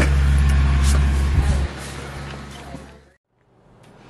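A steady low rumble with a faint hum and a few light clicks, which drops away about halfway through. It breaks off into a moment of silence near the end, then faint room tone.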